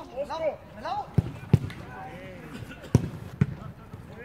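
A football being kicked during play: four sharp thuds, two about a second and a half in, and two more near the three-second mark, among players' shouts.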